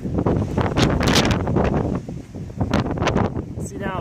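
Wind buffeting the camera microphone in gusts, a rough rumbling noise that is strongest in the first two seconds and eases after that.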